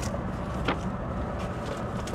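Steady low rumble of road and engine noise inside the cabin of a Volvo B11R double-decker coach on the move, with one faint click a little past a third of the way in.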